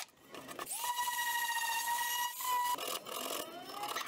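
DeWalt jigsaw cutting handle openings in a guanacaste hardwood board. Its motor whine climbs to a steady high pitch about a second in and holds until nearly three seconds, then a shorter rising whine follows.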